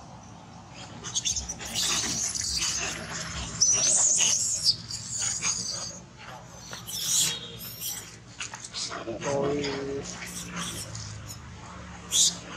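Macaques screaming: shrill high-pitched squeals with wavering pitch from about a second in, a second burst of screams around seven seconds, and a lower drawn-out call near the end.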